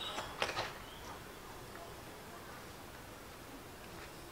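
A few light plastic clicks about half a second in as a clamp-on handle is worked onto a drone's body, then faint background.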